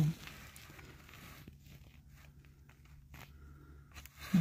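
Faint rustling handling noise with a few soft ticks as a phone is moved in for a close-up, over a low steady hum.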